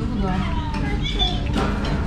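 Restaurant room chatter, with a young child's high voice over other voices.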